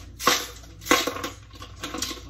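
Boiled shrimp shells being cracked and peeled by hand over a plastic bag: two sharp crunches, one just after the start and one about a second in, with lighter crackling between.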